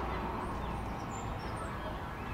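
Outdoor street ambience: small birds chirping in short high calls over a low, steady rumble.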